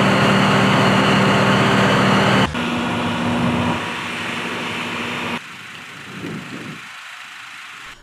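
Machinery running in stretches that change suddenly. First the sewer-cleaning van's engine and pump give a loud steady hum with a strong hiss. About two and a half seconds in this gives way to the diesel engine of an HMK 200 wheeled excavator, which grows quieter about five and a half seconds in.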